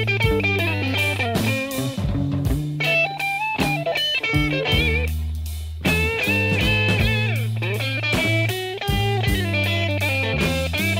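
Instrumental passage of a late-1960s British blues-rock trio: electric guitar playing lead lines with bent notes over bass and drums. About four seconds in the guitar thins out while a low bass note holds for about a second, then the full band comes back in.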